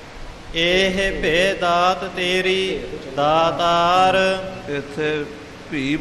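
A man's voice chanting a line of Gurbani in slow, melodic recitation, with held, gliding notes in two main phrases separated by a short breath.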